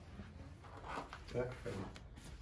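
A man's voice saying a couple of brief words, over quiet room noise with faint handling rustles as the speaker is shifted on its foam packaging.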